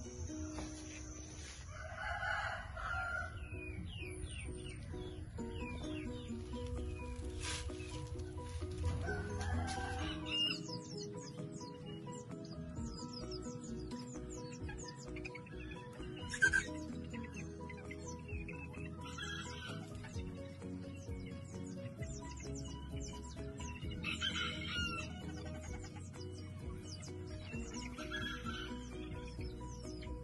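Roosters crowing, about six separate crows spread through the stretch, over steady background music.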